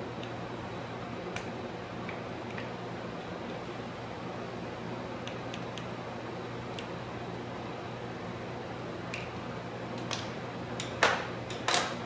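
Steady hum of room ventilation with scattered faint clicks from a hand micropipette being worked, then a few sharper clicks and knocks near the end.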